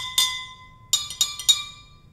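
Metal spoon tapping drinking glasses partly filled with water, a homemade water xylophone. There are about four quick clinks, each ringing on with a clear note. The pitch steps a little higher partway through, since each glass's water level sets its note and less water gives a higher one.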